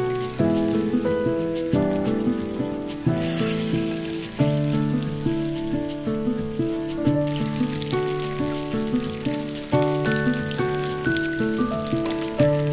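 Salmon fillets sizzling as they fry in oil in a pan, the sizzle strongest in the middle. Background music plays throughout and is louder than the sizzle.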